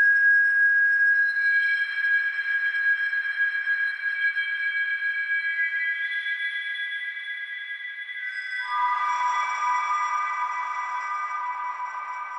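Ambient electronic music made of sustained, high pure tones layered over one another, with new tones joining one by one. About eight and a half seconds in it shifts to a lower pair of tones.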